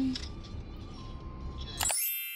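Low, even outdoor rumble, then near the end a bright bell-like chime sound effect strikes suddenly and rings on with a shimmering high tone.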